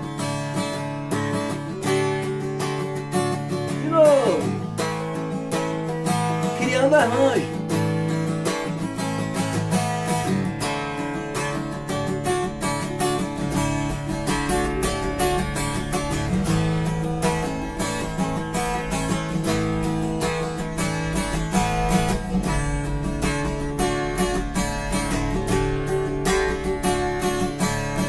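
Acoustic guitar strummed in a steady rhythm, moving between A major and D major chords with sus9 and sus4 embellishments added and lifted off each chord: Asus9 and Asus4 over the A, Dsus9 and Dsus4 over the D.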